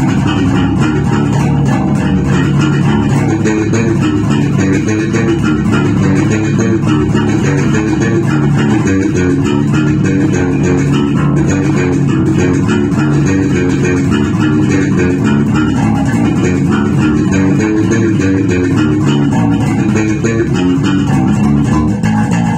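Electric bass guitar played fingerstyle: a continuous plucked groove at a steady level, with no pauses.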